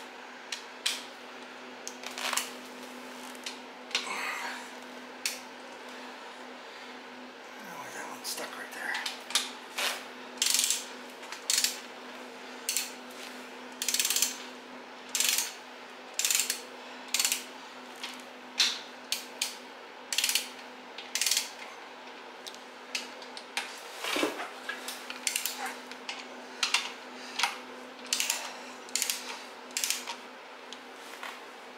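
A torque wrench's ratchet clicking in short back-and-forth strokes, run after run, as Loctited bolts on a GM 8.2 10-bolt rear axle's limited-slip differential carrier are run down before being torqued. A steady low hum runs underneath.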